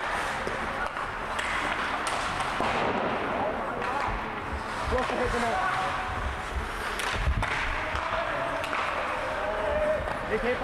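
Ice hockey game heard from the stands: indistinct spectator voices over the rink's steady background noise, with a couple of sharp stick or puck knocks about seven seconds in.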